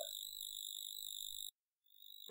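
Faint steady high-pitched electrical whine with a low hum underneath: the recording's own noise floor between spoken sentences. It cuts off to dead silence about one and a half seconds in.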